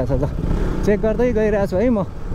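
A man talking over the steady running of a motorcycle engine, with low wind and road noise underneath.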